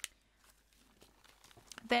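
Near silence between sentences, with one short click at the start and a few faint ticks and light rustles from hands handling a paper-and-fabric craft envelope.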